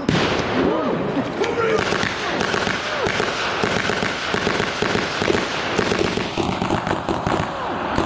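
Blank rounds fired from rifles: a sharp shot right at the start, then scattered pops of gunfire, with voices underneath.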